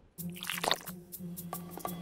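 Short squishy, dripping cartoon sound effects, a few sharp wet blips, over a steady low hum and background music.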